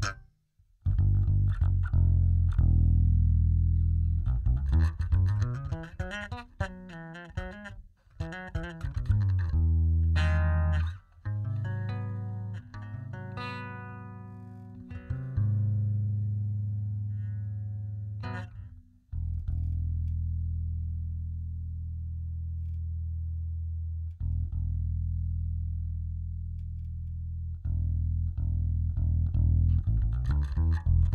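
Electric bass played through a Zoom B6 multi-effects with a ToneX One amp model in its effects loop, the modelled return blended with the dry signal into one mono path. A run of notes in the first half and higher ringing notes around the middle, then long low notes left to ring.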